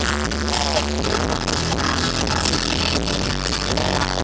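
Live pop-rock band playing on stage, electric guitars and synthesizer over a steady deep bass, heard through the hall.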